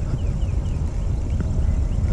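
Wind buffeting the microphone: a steady, fairly loud low rumble.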